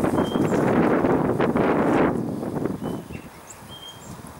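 Wet window-washing applicator scrubbed back and forth over a glass pane, a dense rubbing that fades out after about two and a half seconds.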